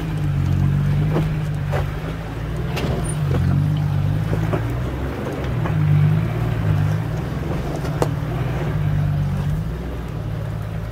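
4x4 engine running at low revs as the vehicle crawls up a steep rocky track, its sound swelling and easing with the throttle. A few sharp knocks come from the tyres and suspension going over rocks.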